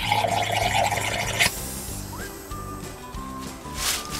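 Background music with steady held notes. Over it, a burst of hiss in the first second and a half cuts off sharply as a compressed-air hose adapter is coupled to the sprinkler line.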